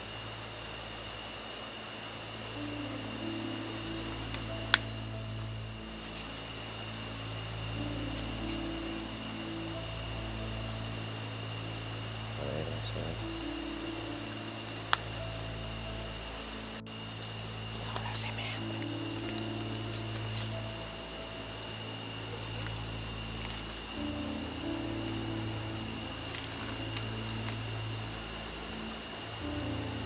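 Crickets singing steadily in a night chorus over low, sustained background music. Two sharp clicks come about 5 and 15 seconds in.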